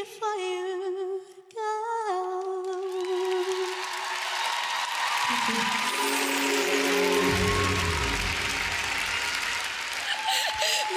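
A woman's voice holds a long sung note with vibrato, broken once briefly, with no accompaniment. From about three seconds in, audience applause and cheering rise and fill the rest.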